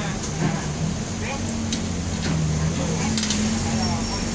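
A knobby mountain bike tyre being worked onto its rim by hand, with a few short scrapes and creaks of rubber against the rim. A steady low hum runs underneath.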